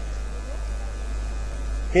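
Steady low electrical mains hum from the microphone and sound system, with no other sound standing out.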